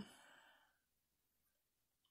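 A soft exhale or sigh from the woman fading out within the first half-second, then near silence.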